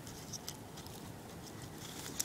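Faint small scrapes and clicks of a folding knife blade cutting into a dry, pithy plant stem.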